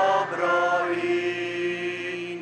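A slow hymn sung in Polish. A few sung syllables change early on, then one note is held for more than a second.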